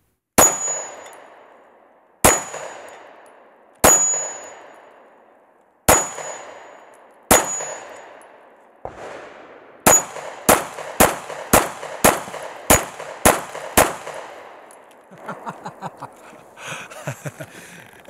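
Springfield Armory Hellcat 9mm micro-compact pistol firing: five slow aimed shots about one and a half to two seconds apart, then eight quicker shots about two a second. Several shots are followed by a short high ring of steel targets being hit. Softer handling clicks follow near the end as the slide stays locked back on the empty gun.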